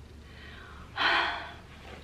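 A woman's short, breathy gasp about a second in, fading away quickly.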